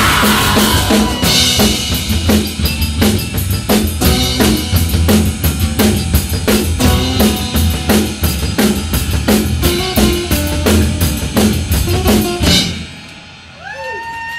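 Live rock band playing loud: a fast, driving drum-kit beat with electric and acoustic guitars. The song stops abruptly about a second before the end, leaving the room much quieter.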